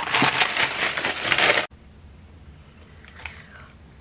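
Greaseproof paper crinkling loudly as it is handled and peeled off a cured silicone mould, cutting off abruptly about a second and a half in, followed by a faint brief rustle.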